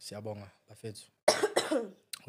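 A man coughing into his fist: a short run of three voiced coughs, the last and loudest a little over a second in.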